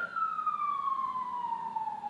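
An emergency-vehicle siren sounding as one long tone whose pitch falls slowly and smoothly.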